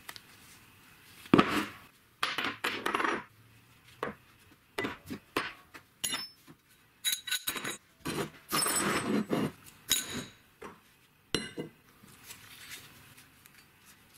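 Metal parts (steel washers, bushings, a steel plate and a bicycle sprocket cluster) being picked up and set down on a plywood workbench: a run of irregular clinks and knocks, some ringing briefly, with short scrapes as pieces are slid about.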